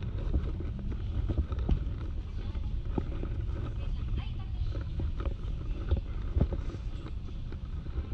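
Walking ambience in a pedestrian walkway: a steady low rumble on the microphone, with scattered footsteps and indistinct voices of passers-by.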